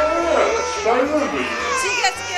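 Music playing in a large hall, with children's high voices calling out over it.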